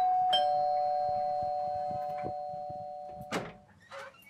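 Two-tone "ding-dong" doorbell chime: a higher note and then a lower one, ringing on and slowly fading for about three seconds, then cut off with a click.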